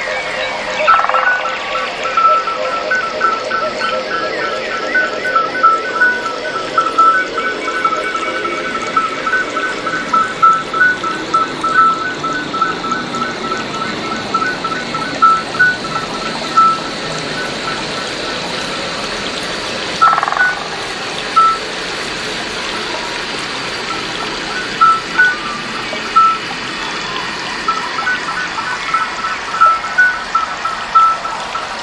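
Electronic ambient music made with MetaSynth: a steady wash of sound under a fast run of high, repeated chirping beeps. The beeps stop a little past halfway and come back in short broken runs near the end.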